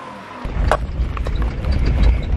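Inside a moving Lexus LX470 with the window open, a loud low rumble of driving and wind buffeting the microphone starts suddenly about half a second in, with a few light knocks.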